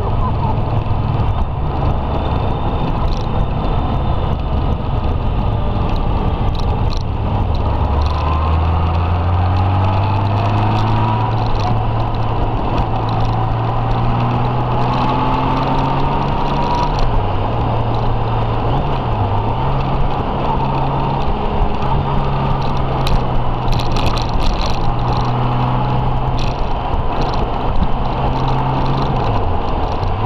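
Touring motorcycle engine pulling steadily at road speed, with wind rushing over the microphone. The engine note dips briefly a few times, in the middle and near the end.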